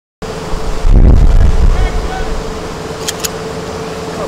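Loud, wind-like rushing noise with a steady hum beneath it, swelling into a heavy low rumble about a second in, and two short sharp ticks near the end.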